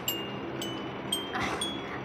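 Chimes ringing: four high bell-like notes, each starting with a light strike and ringing on, about one every half second.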